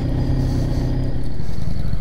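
Kawasaki Z900 motorcycle engine running steadily while riding slowly along a street, getting gradually a little louder.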